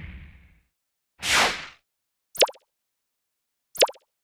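Motion-graphics sound effects: a whoosh fading out in the first half-second, a second short whoosh about a second later, then two quick, sharp swishes that fall in pitch, one near the middle and one near the end.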